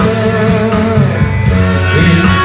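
A live blues-rock band playing an instrumental passage between sung lines, with guitar to the fore over bass and drums.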